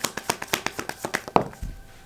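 Deck of tarot cards shuffled by hand: a rapid run of light card clicks, about ten a second, ending in a sharper click about one and a half seconds in.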